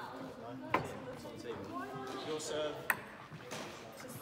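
Table tennis ball struck with bats during play, two sharp clicks about two seconds apart.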